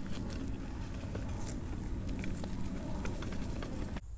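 A wheelbarrow loaded with twigs and brush being handled: scattered small cracks and crunches of dry sticks over a steady low rumble.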